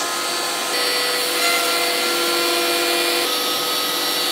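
DeWalt router on an X-Carve CNC machine spinning a spiral upcut cutter as it cuts a climb-cut circle right through walnut-veneered MDF. It is a steady, high-pitched whine over a rushing cutting noise, and the pitch of the whine shifts slightly about a second in and again near the end.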